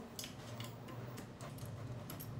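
Small precision screwdriver turning out screws on a 3D printer's hotend carriage: a few faint, irregular ticks and clicks over a steady low hum.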